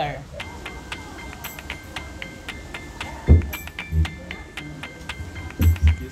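Background music with short bright notes over held tones, and a few heavy low thumps about halfway through and again near the end.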